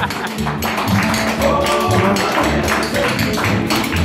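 Live acoustic country band playing: a strummed acoustic guitar and upright bass notes keep a steady rhythm, while a lap-played slide guitar plays held, gliding lead notes.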